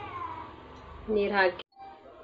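A faint, short falling cry near the start, then a woman's brief spoken "haan".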